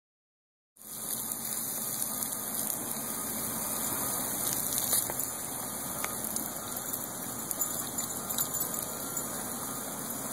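Garden hose spraying water, a steady hiss that starts about a second in, with a few faint ticks over it.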